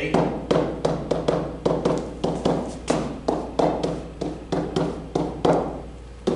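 Stylus tapping and scratching on an interactive whiteboard while symbols are written: a quick, uneven run of short, sharp taps, about two or three a second.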